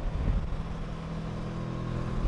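Kawasaki Versys 650 parallel-twin engine running steadily at cruising speed, heard from the rider's position with wind and road noise.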